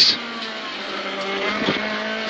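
Honda Civic rally car's engine heard from inside the cabin, running at a steady held note under power, with road and tyre noise underneath.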